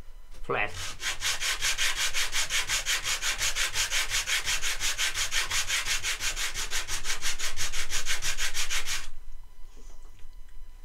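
A small wooden block rubbed back and forth by hand on sandpaper mounted on a flat board, in quick, even rasping strokes, about five a second. It starts about half a second in and stops about a second before the end.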